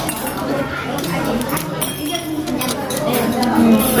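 Metal chopsticks and serving tongs clinking a few times against metal bowls and plates, over a steady murmur of voices.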